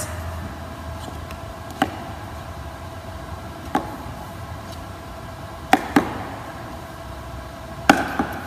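Plastic sport-stacking cups clacking as three cups are lifted off a stack and set back down on the floor, a sharp click every couple of seconds, five in all, with two close together just before the end. A low steady hum runs underneath.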